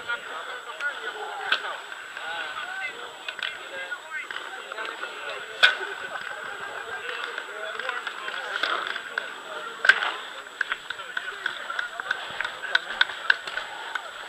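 Indistinct voices of people talking in the background, with a scatter of small clicks and sharp pops. The two loudest pops come about six and ten seconds in.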